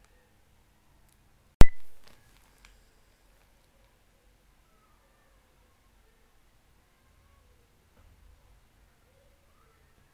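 A single sharp click about a second and a half in, dying away within half a second; otherwise near silence with faint room tone.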